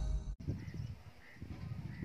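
The tail of an intro theme stops abruptly, leaving low wind rumble on the microphone outdoors. Over it a bird gives three faint short chirps, evenly spaced about half a second apart.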